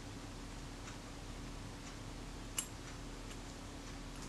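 Small metal shutter parts being handled: a few faint ticks and one sharp click about two and a half seconds in, as the plate of a Synchro-Compur leaf shutter is worked into place. A low steady hum lies under it.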